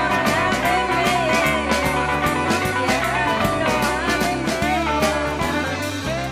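A woman singing karaoke into a handheld microphone over a rock backing track with a steady beat.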